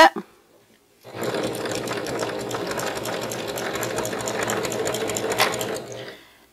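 Singer electric sewing machine stitching a seam through layered fabric, starting about a second in and running at a steady speed with rapid, even needle strokes for nearly five seconds, then stopping just before the end.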